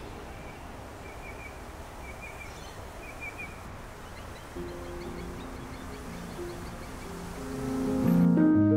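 Soft background music over steady outdoor noise with a low rumble like distant city traffic. A few faint bird chirps come in the first half. The music's notes come in about halfway and swell near the end.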